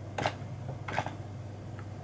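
Two keystrokes on a computer keyboard, typed slowly with one hand, about three-quarters of a second apart, over a faint steady low hum.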